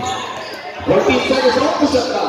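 A basketball bouncing on the court floor during live play, with voices of players and spectators calling out, louder from about a second in.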